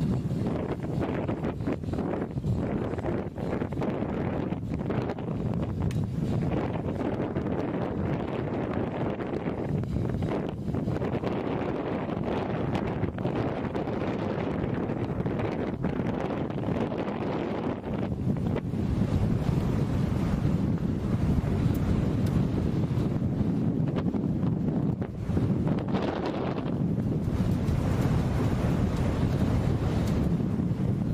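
Strong wind buffeting an outdoor camera microphone: a steady low rumble that grows a little louder in the last third.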